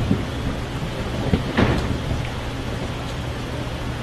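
Audience applauding: a steady wash of clapping, with a few louder claps or shouts standing out about a second and a half in.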